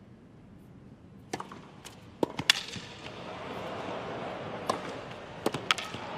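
Tennis rally on a hard court: after a hush, a run of sharp, crisp racket strikes and ball bounces, the first about a second in. A crowd murmur grows louder behind them.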